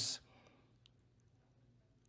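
A man's voice trailing off at the end of a word, then a pause of near silence broken by one faint click a little under a second in.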